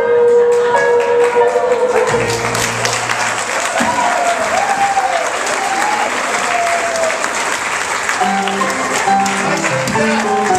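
Crowd applauding as a recorded song ends on a held sung note. A new piece of music starts near the end.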